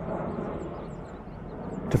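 Steady outdoor background noise, a low rumble with hiss and no distinct events.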